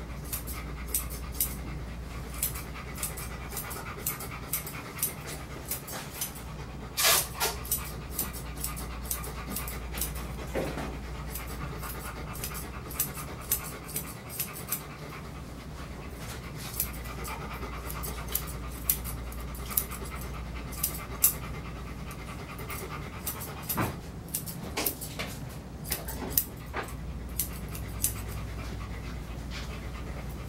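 Grooming shears snipping through a golden retriever's coat: sharp clicks at irregular intervals, some in quick runs, with the dog panting.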